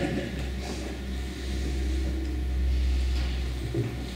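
A steady low hum with no speech, over faint, indistinct room sound.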